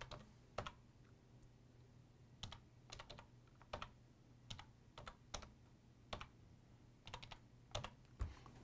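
Computer keyboard keys tapped faintly in short, irregular runs of clicks as an IP address is typed into a form.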